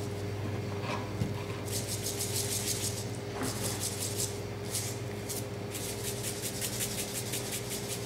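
Spice shaker bottle rattling as a coarse, chunky rub is shaken out over raw beef short ribs, in runs of quick shakes with short pauses. A steady low hum runs underneath.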